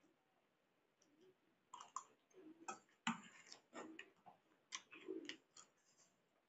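Eating sounds: a steel spoon clinking and scraping on a stainless steel plate, with chewing of pasta. After a quiet start, a run of short sharp clicks begins about two seconds in.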